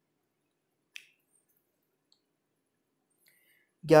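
Near silence broken by one short, sharp click about a second in, followed by two much fainter ticks.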